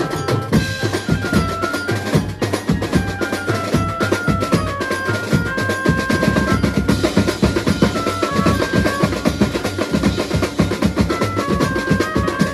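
Mumbai-style banjo party band playing live: fast, dense drumming on a set of tom drums, snare and a big bass drum, with a high melody moving in short steps over the beat.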